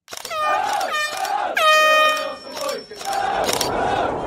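A train horn sounds three blasts, the third the longest, then a train runs with a steady rumble.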